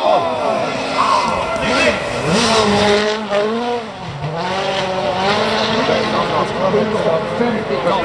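Citroën C3 WRC rally car at full throttle, its turbocharged four-cylinder engine rising and falling in pitch through gear changes as it comes over the crest and passes close by. The engine note drops and dips about four seconds in, then climbs again as it pulls away.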